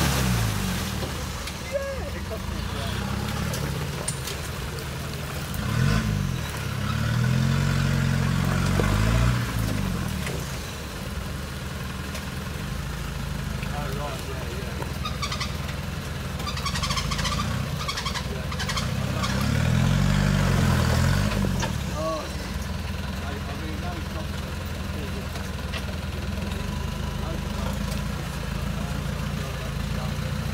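Land Rover Defender's engine running under load at crawling speed through deep ruts, its revs rising and falling in surges: briefly about six seconds in, longer from about seven to nine seconds, and again around twenty seconds.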